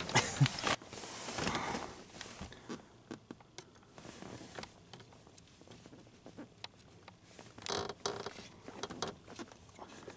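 Clothing and body rustle, then faint scattered small clicks and taps of fingers working in a car's dash-end fuse panel, pushing a 10 amp fuse into place, with a short cluster of louder clicks near the end.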